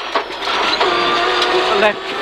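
Peugeot 306 rear-wheel-drive rally car's engine running hard, heard from inside the cabin, holding a steady high note for about a second under a constant rush of road and tyre noise.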